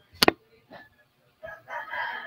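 A sharp click about a quarter second in, then a rooster crowing, starting about a second and a half in and running for just under a second.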